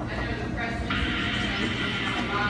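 A radio broadcast plays over a Speed Queen front-load washer running its normal cycle, the drum turning with a steady low hum. About a second in, a denser, steadier sound comes in on the radio.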